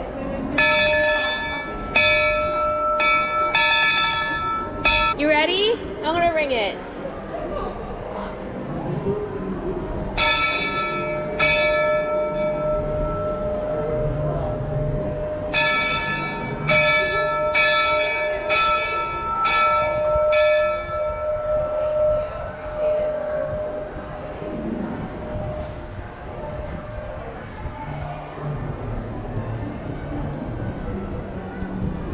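A steam locomotive's brass bell rung by hand, about two strikes a second, in three bouts: a long run at the start, two strikes near the middle, and another long run whose ringing hangs on for a couple of seconds after the last strike.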